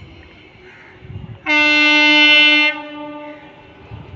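Locomotive air horn sounding one loud, steady blast about a second long, starting about a second and a half in.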